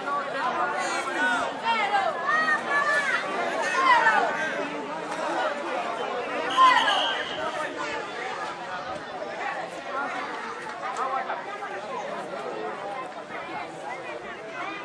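Indistinct chatter of many voices talking and calling out over one another, busiest in the first half. About halfway through there is a short high steady tone, the loudest moment.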